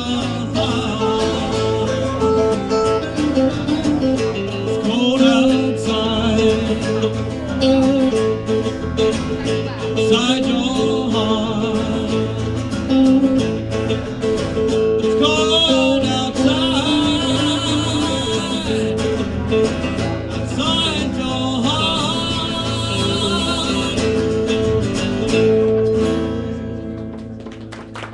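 Live band playing a rock song: strummed acoustic guitar, electric guitar, bass and drums, with singing. The music dies away near the end as the song finishes.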